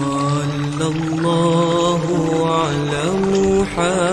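Selawat, Islamic devotional praise of the Prophet, sung as a chant-like melody in long held notes that slide and bend from one pitch to the next.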